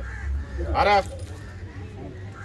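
A single short, loud call about three-quarters of a second in, rising and falling in pitch, over a steady low rumble.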